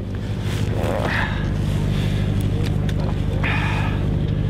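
Fishing cutter's engine running steadily, a low even hum. A voice is heard faintly about a second in and again near the end.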